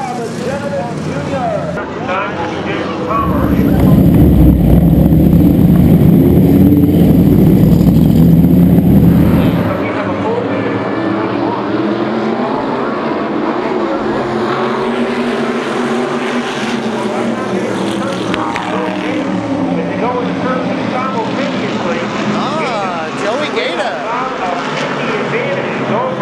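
SK Modified race cars' V8 engines running at racing speed. From about 3 to 10 seconds the engine is much louder and closer, as heard from the in-car camera, with a steady high whine over it. The rest is the field of cars running in a pack, with the engine pitch rising and falling as they pass.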